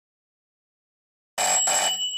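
Telephone bell ringing, starting about one and a half seconds in, in two quick bursts, with the bell's tone ringing on as it ends.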